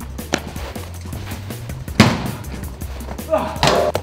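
A thrown baseball hits something hard with one sharp smack about two seconds in. It plays over background music with a steady low bass. A faint click comes early on, and a short vocal exclamation comes near the end.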